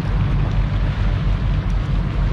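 Wind buffeting the microphone: a loud, steady low rumble with a fainter hiss above it.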